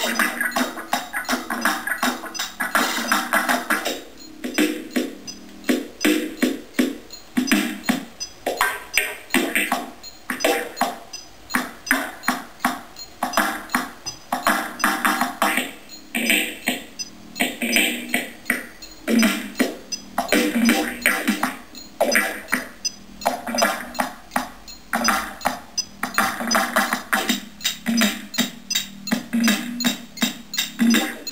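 Electronic dance music with a fast, steady beat played by a Korg synthesizer driven over MIDI from an Apple IIe, its sound changing in brightness as the controls are worked.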